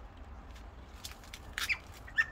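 Faint, short calls of a bird, starting about one and a half seconds in, over a low steady rumble of wind on the microphone.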